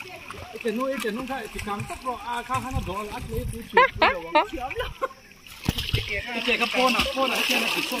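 People talking in a swimming pool over the splash and slosh of pool water, with a few high-pitched calls about four seconds in. The splashing grows stronger near the end.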